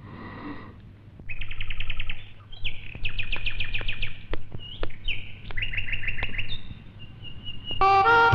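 Birdsong: several quick trilled phrases of high chirps, one after another, over a low steady hum.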